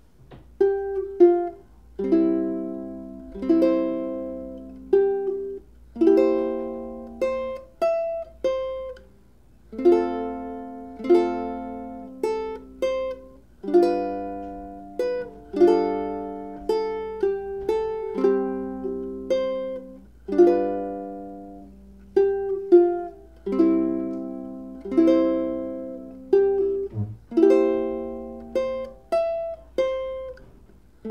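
Solo ukulele strung with Rotosound low-G nylon strings, played fingerstyle. Chords are plucked every second or two and left to ring and fade, with a melody line picked above them.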